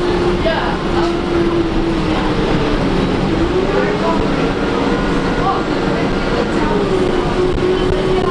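Inside a 2011 Gillig Advantage transit bus, the drivetrain runs with a steady whine over a low road rumble. The whine climbs about three seconds in and drops back near the end, following the bus's speed.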